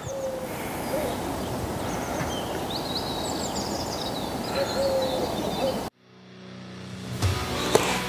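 Lakeside ambience: a steady background rush with small birds chirping and a faint, low cooing bird call. About six seconds in it cuts off abruptly, and music fades in.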